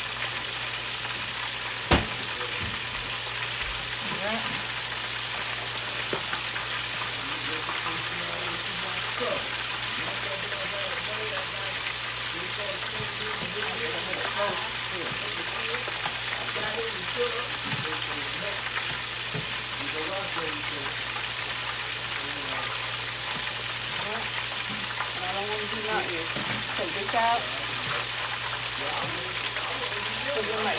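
Oil sizzling steadily in a Farberware electric deep fryer as food fries in the basket, an even hiss, with one sharp knock about two seconds in.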